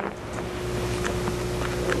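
Room tone through the meeting-room microphones: a steady low rumble and hum with a faint steady tone above it and a few faint ticks.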